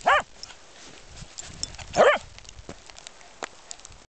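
A corgi barks twice, short high barks, one at the start and one about two seconds in, with a few faint clicks between.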